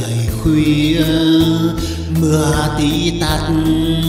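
A Vietnamese ballad playing: a singer's slow, held vocal line over instrumental backing music.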